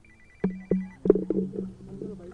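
High electronic ringing tone, warbling quickly and repeating, which stops about a second in, with a few soft knocks underneath.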